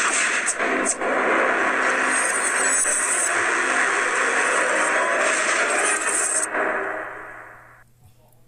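A YouTube channel's animated-logo intro music sting: a dense, noisy rush of sound that holds steady for about six and a half seconds, then fades out over the last second or so.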